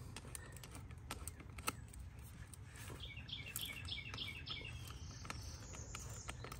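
Faint scattered clicks of a screwdriver turning a worm-drive hose clamp screw, with a bird chirping a quick run of short, high notes in the middle.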